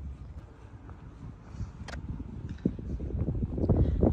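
Wind buffeting the phone's microphone outdoors: an uneven low rumble that swells and dips, with a single short click about halfway through.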